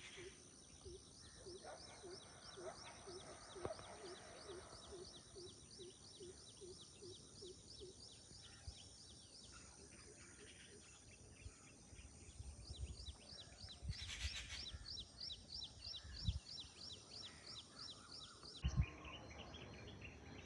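Faint outdoor ambience: a steady high-pitched chirping that pulses about four times a second and stops suddenly near the end. A lower call repeats about twice a second over the first several seconds, and a few dull thumps fall in the second half, the loudest shortly before the end.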